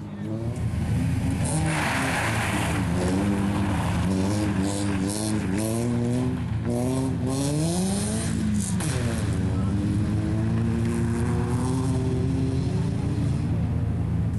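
Rally car engine pulling hard through the gears: its pitch climbs several times in quick succession as it shifts up, drops around the middle as the driver lifts off, then rises again. A short burst of hiss about two seconds in.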